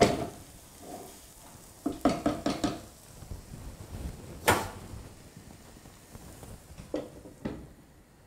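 Kitchen pans and utensils clattering as they are moved and set down: a knock at the start, a quick run of clinks about two seconds in, a sharp clang about halfway, and two more knocks near the end.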